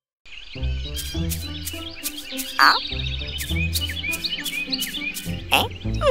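Cartoon background music after a brief silence: a bouncy bass line with a steady clicking beat about three times a second, and short chirpy sliding sound effects over it. Rising whistle-like sweeps come about halfway through and again near the end.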